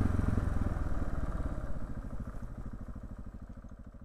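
Trail motorcycle engine idling with an even, low pulsing beat that fades gradually away toward the end.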